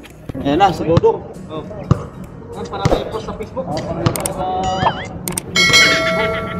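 A basketball bouncing on a concrete court, a sharp bounce about once a second, among players' voices. Near the end a bright ringing chime comes in.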